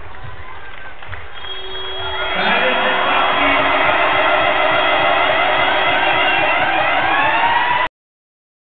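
Basketball arena's end-of-game horn sounding one steady note for about five seconds as the game clock runs out, while the crowd's cheering swells from about two seconds in. Everything cuts off abruptly just before the end.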